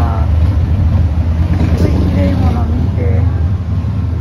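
Indistinct voices of people talking, over a loud, steady low rumble.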